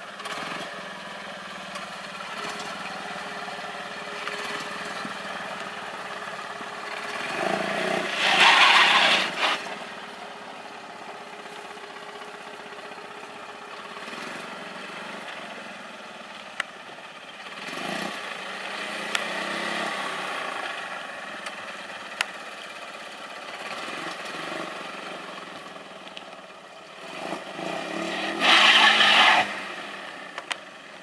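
Fiat Panda Cross running at low speed as it crawls over dirt mounds on four-wheel drive. Two loud rushing surges come about 8 and 28 seconds in, with a few faint clicks between them.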